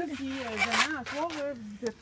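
People's voices, with green husks being ripped off ears of sweet corn by hand, a dry tearing about halfway through.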